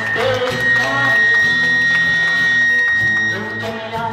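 Live band music from electric bass, acoustic guitar and electric guitar, with a high note held steady for about three seconds before it fades.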